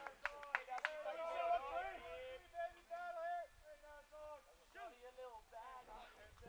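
Faint, distant raised voices of players calling out around the ballfield, with a few hand claps in the first second.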